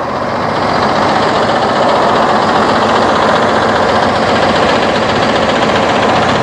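A bus's Cummins 6.7-litre diesel engine idling steadily, growing louder over the first second and then holding level.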